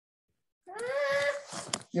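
A single high-pitched, drawn-out vocal call lasting under a second, followed by a shorter, fainter one, picked up over a video call.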